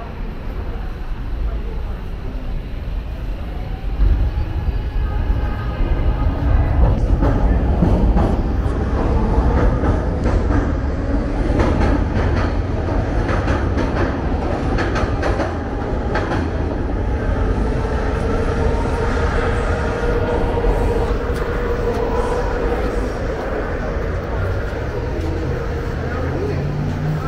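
Market–Frankford Line elevated train running over the steel El structure: a heavy rumble that swells about four seconds in, with rapid clacking of the wheels over rail joints. A steady whine comes in over the last several seconds.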